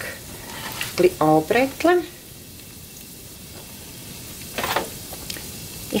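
Asparagus spears and a kitchen knife handled on a wooden cutting board, with one brief clatter shortly before the end, over a steady faint hiss.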